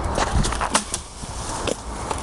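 Footsteps crunching irregularly on a dirt-and-gravel woodland track, over a low rumble of handling or wind on a handheld camera's microphone.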